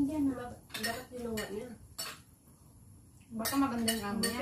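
Cutlery clinking against plates and dishes while eating, a few sharp clinks, the clearest about two seconds in.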